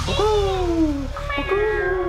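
Human voices sounding long, sliding tones in a group vocal exercise: a first tone falls in pitch over about a second, then new tones come in about halfway and are held.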